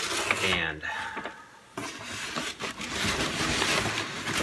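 Brown kraft packing paper rustling and crinkling as it is pulled back inside a cardboard box, loudest from a little under two seconds in. A short burst of voice comes in the first second.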